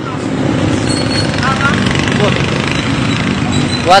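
Steady roadside traffic noise with wind rumbling on the phone's microphone.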